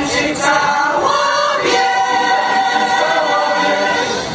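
Mixed choir of men's and women's voices singing in parts, moving through a few notes and then holding a long chord.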